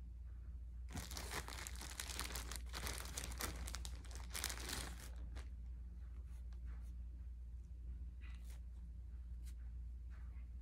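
Paper and plastic wrappers of injection supplies being torn open and crinkled by hand: a dense run of tearing and crinkling for about four seconds from a second in, then a few scattered crinkles. A steady low hum runs underneath.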